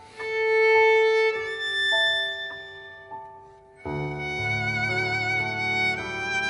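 Background music: a violin playing a slow melody in long held notes, joined about four seconds in by a fuller accompaniment with low bass notes.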